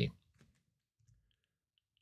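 A few faint clicks from computer controls, mouse or keyboard, during otherwise near-quiet desk work, just after the end of a spoken word.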